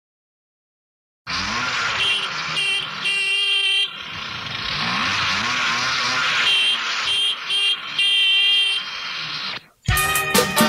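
A rushing traffic-like noise starts suddenly about a second in, with pitched horn honks in a short-short-long pattern, heard twice. It stops abruptly just before the song's music begins.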